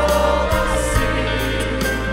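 A choir singing a Russian-language Christian song, led by a woman soloist on a microphone, over a steady musical accompaniment.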